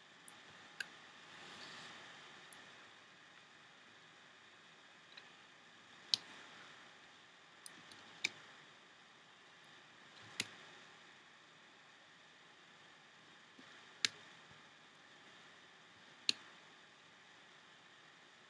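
Small rubber bands being stretched onto the pegs of plastic Rainbow Loom looms, giving about ten sharp snaps and clicks at irregular intervals over a faint hiss, with a soft rustle of fingers on the loom near the start.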